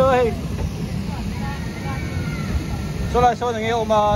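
Voices calling out briefly at the start and again near the end, over a steady low rumble.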